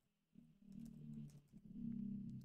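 Faint computer keyboard typing as the letters of a crossword answer are entered, over a quiet low hum that starts about half a second in.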